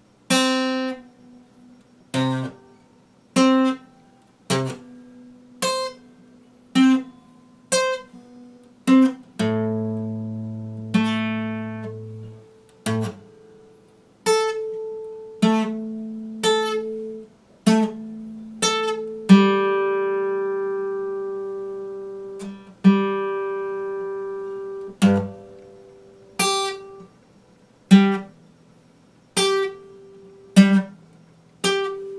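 Epiphone acoustic guitar, plucked slowly with about one note or chord a second. Most notes are cut short; a couple of chords, about a third and two-thirds of the way in, are left to ring for several seconds.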